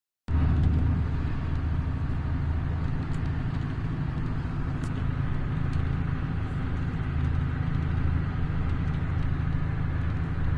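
Steady low engine drone and tyre noise of a vehicle driving along a slushy, snow-covered road, with a few faint ticks.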